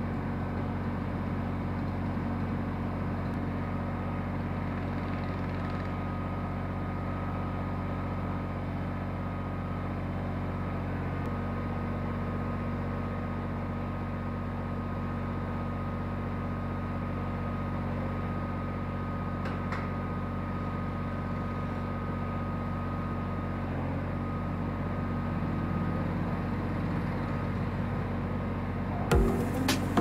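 Kubota BX23S compact tractor's three-cylinder diesel engine idling steadily, with a few sharp knocks near the end.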